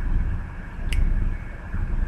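A steady low background hum, like room or ventilation noise picked up by a webcam microphone, with one short faint click about a second in.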